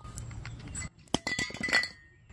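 Metal butane gas canisters being handled, giving a cluster of sharp clicks and clinks with a brief metallic ring from about a second in.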